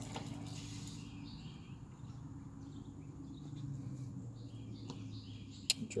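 Faint outdoor background: a steady low hum with scattered faint chirps of birds or insects, and one sharp click near the end.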